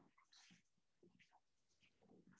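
Near silence: room tone with a few faint, brief soft rustles.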